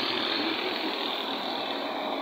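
A steady engine running in the background, with no single sharp event.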